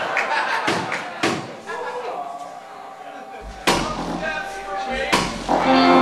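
Indistinct talk, then two deep booming hits through the PA about a second and a half apart, with a low rumble between them. Near the end a sustained keyboard chord comes in as the band starts to play.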